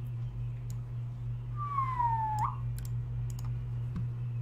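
A few sharp computer mouse clicks over a steady low electrical hum, as the top rows of an on-screen list are selected; about halfway through, a short tone slides down in pitch and then jumps back up.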